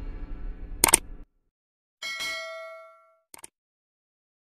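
Subscribe-button animation sound effects: a sharp click as the intro music cuts off about a second in, then a bell-like notification ding that rings for about a second, and two quick clicks near the end.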